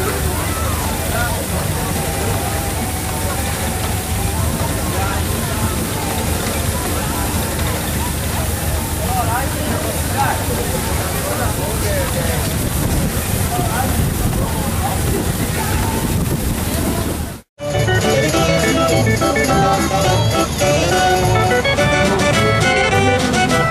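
A miniature steam traction engine hissing steam amid crowd chatter. About two-thirds of the way through the sound cuts off suddenly, and a fair organ starts playing a tune with a steady beat.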